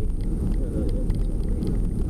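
Steady low rumble of a van's engine and road noise inside the cabin, with faint passenger chatter under it.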